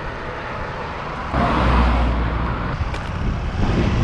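Roadside car and traffic noise with wind rumbling on the microphone, a steady noise that swells louder for about a second and a half from just over a second in.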